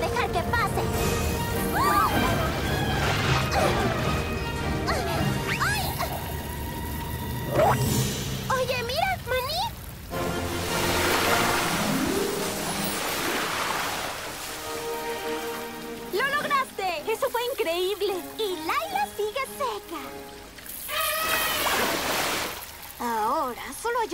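Cartoon soundtrack of music and short character exclamations. From about ten to thirteen seconds in, a loud rush of gushing water, as the blocked fountain jets burst free.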